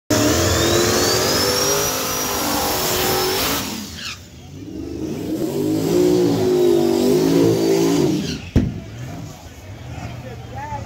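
Drag-race Buick Grand National doing a smoky burnout, its engine revving hard under a rising whine, then dropping off sharply about four seconds in. The engine revs up again and pulls away, fading, with one sharp crack near the end.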